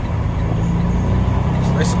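Semi-truck's diesel engine running with a steady low drone, heard from inside the cab. A man's voice begins near the end.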